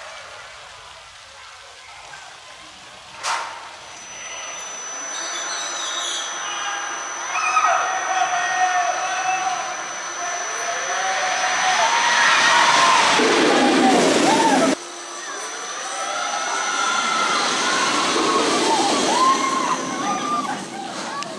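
Intamin straddle coaster train rolling along steel track, its rumble building for a few seconds before cutting off abruptly, mixed with people's voices and shouts. A sharp click sounds near the start.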